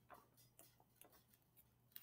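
Near silence with a few faint paper ticks and rustles as a picture-book page is turned.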